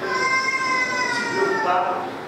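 A man's voice through a handheld microphone holding one long, high drawn-out cry for about a second and a half, sliding slightly down in pitch, then dropping to a lower note near the end.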